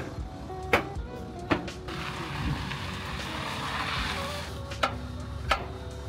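Sharp knocks on a semi-trailer's wheel brake, struck by hand, about five blows with a gap in the middle, to break loose brakes that have frozen and locked up in the cold. A rushing hiss swells in the middle, over background music.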